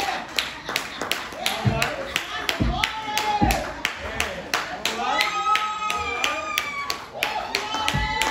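Handclapping in a steady rhythm, a few claps a second, with voices calling out in drawn-out, wavering tones over it.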